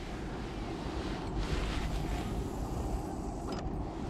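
Steady low rumble of outdoor background noise, with no distinct event standing out.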